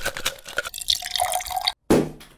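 Liquid pouring and splashing, with a busy run of small drips and splashes, that stops abruptly shortly before the end. A sudden loud hit follows right at the end.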